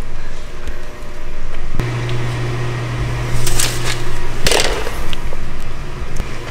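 A paper instruction sheet being handled and rustling, with two brief rustles about halfway through, over a steady low hum.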